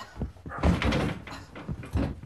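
Hand-to-hand fight: several dull thuds of bodies hitting the wall and door, with scuffling between them.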